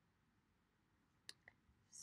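Near silence broken by a single sharp mouse-button click about two-thirds of the way in, followed shortly by a fainter tick.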